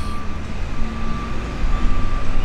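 Loud city traffic noise: a steady low rumble of passing vehicles, with a faint steady tone running through it.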